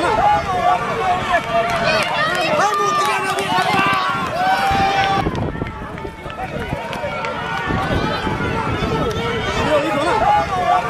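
Spectators shouting and calling out over one another as racehorses gallop along a dirt track, with the thud of hooves underneath. The shouting is loudest in the first half and eases around the middle before picking up again.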